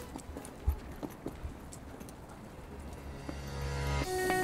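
Footsteps on a paved pedestrian bridge deck, heard as scattered light clicks. Music fades back in near the end.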